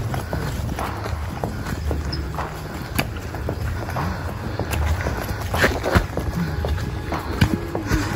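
Footsteps of hikers walking on a muddy dirt trail: irregular thuds and scuffs, a few sharper knocks, over a steady low rumble.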